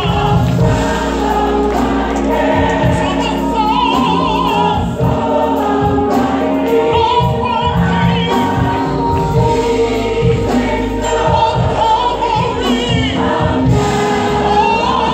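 Gospel mass choir singing in full voice, with a lead singer and instrumental accompaniment.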